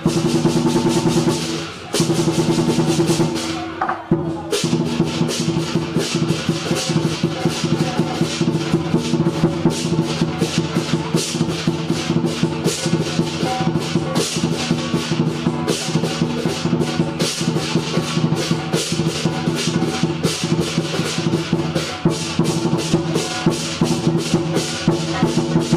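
Lion dance percussion: rapid, driving drumming with a dense beat of hits over steady low ringing tones, broken by short pauses about two and four seconds in.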